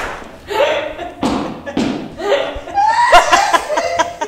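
A woman laughing hard in repeated bursts, with breathy gasps in the middle and higher-pitched, louder laughter near the end.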